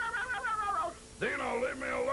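A man imitating the cartoon pet dinosaur Dino with a high, wavering, whining cry that stops about a second in. More of his voice follows near the end.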